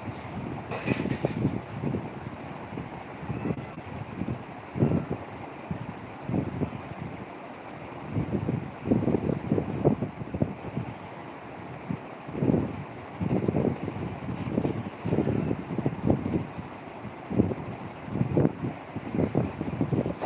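Irregular low rumbling gusts, like wind buffeting the microphone, coming and going every second or so over a steady hiss.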